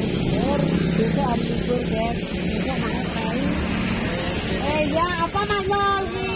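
Road traffic: a motor vehicle engine, likely a passing motorcycle, runs steadily, with people's voices talking over it, louder near the end.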